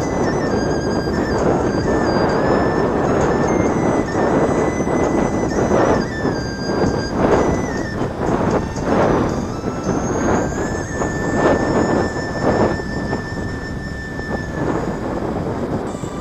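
Heavy wind noise rushing over the microphone of a camera moving along a road, steady with irregular gusts. A thin high whine shifts in pitch every few seconds, and music plays underneath.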